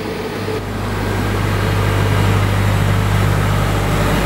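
Gas-fired truck engine of a combined heat and power unit running steadily inside its enclosure: a low, even hum that grows louder over the first second or two.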